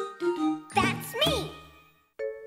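End of a children's cartoon theme song: a bright tune with chiming, jingling sounds and a child's voice, fading out near the end.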